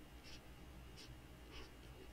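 Near silence: room tone with three or four faint, short taps of a stylus on a tablet screen.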